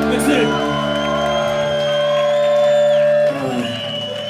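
A live punk band's closing chord ringing out on distorted electric guitars and bass, with the crowd whooping and shouting. The held chord cuts off a little over three seconds in.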